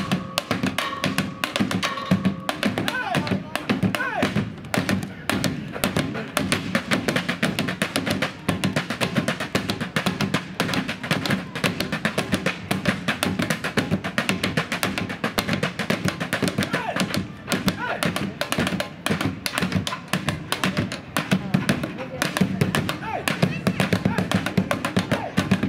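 Live percussion: drumsticks beating a rapid, steady rhythm on painted barrels and other everyday objects, mixed with music.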